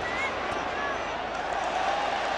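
Football stadium crowd: a steady, dense noise of thousands of fans, with a few faint whistles over it.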